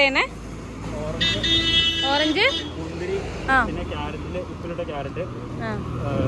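A vehicle horn sounds once, a steady blare of a little over a second, over the low rumble of road traffic.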